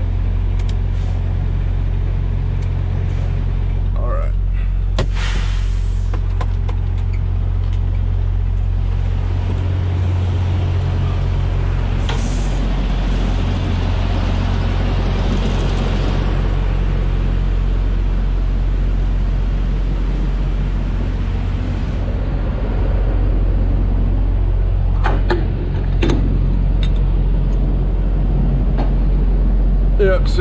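Semi truck's diesel engine idling, a steady low hum, with a few sharp clicks and knocks.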